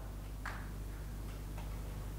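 Quiet lecture-hall room tone: a low steady hum, with a faint short click about half a second in and a couple of fainter ticks later.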